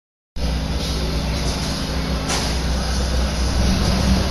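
A 16 hp (656 cc) Briggs & Stratton twin-cylinder engine running steadily through dual chrome side pipes taken from a motorcycle, a little louder near the end. It is on its first start-up, with the carburettor not yet set.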